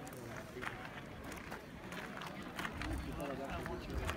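Indistinct voices of people talking in the open, with a few short sharp clicks scattered through.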